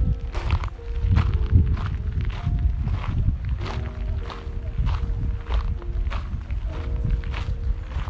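Footsteps on a gravel path at a walking pace, about two a second, with a faint tune of held notes in the background.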